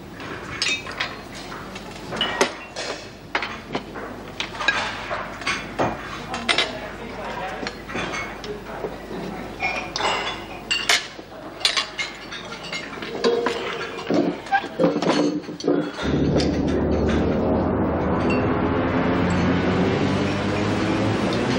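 Cutlery clinking and scraping on plates and dishes over an indistinct murmur of voices. About sixteen seconds in, a sustained chord of background music begins and stays steady.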